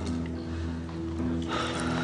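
Tense background score of sustained low droning tones; about one and a half seconds in, a burst of rustling noise comes in over it.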